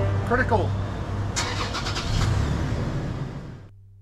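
A car's engine running close by on the street as a steady low hum, with a brief sliding vocal sound about half a second in and a few sharp clicks around the middle, fading out just before the end.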